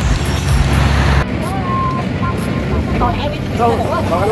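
A passenger train passing close by: a heavy low rumble that cuts off abruptly about a second in, then a quieter running noise with voices over it.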